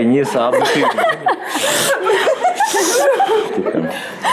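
Several people talking and laughing together, voices and chuckles overlapping.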